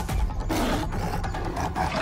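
Film-trailer music with a big cat's roar coming in about half a second in.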